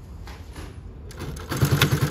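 A Juki LU-2860-7 double-needle walking-foot industrial sewing machine starts up about a second in and stitches through denim with a fast, even, rhythmic clatter.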